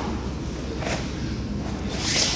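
Fabric of jiu-jitsu gis rustling as two grapplers shift their weight on the mat, with one short swish about a second in.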